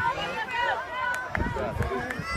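Background chatter of spectators and children's voices across an open field, with low rumbling thumps on the microphone starting about two-thirds of the way in.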